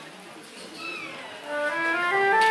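Two flutes starting to play: a falling glide in pitch about a second in, then held notes that come in and grow louder near the end.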